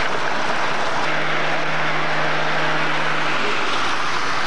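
Road traffic noise: a steady hiss of tyres and wind, with a low, even engine hum from about a second in until shortly before the end.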